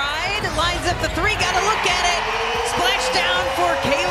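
Basketball broadcast audio: a play-by-play commentator calls a three-point shot over arena crowd noise, and the crowd cheers the made basket.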